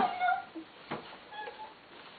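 A brief high-pitched vocal squeal that trails off about half a second in, followed by a single soft knock and a low, quiet room.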